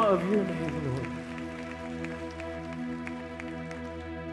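Church worship band music: a voice sings a wavering note that glides down and ends about a second in, over sustained chords that ring on steadily.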